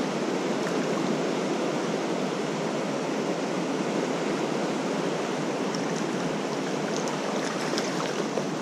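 River rapids rushing steadily, an even noise of fast-flowing water.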